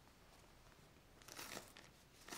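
Brief crinkling rustle of plastic packaging and a folded shirt being handled, starting a little over a second in.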